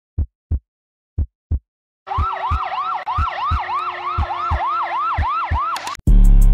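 Heartbeat sound effect: pairs of low thumps about a second apart. About two seconds in, a yelping siren starts, rising in quick repeated sweeps about three a second, with steady low thumps under it.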